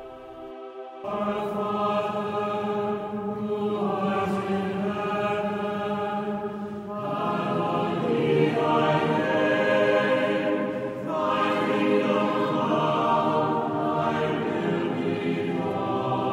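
Choral chant music: voices singing long held chords that change every few seconds, starting about a second in.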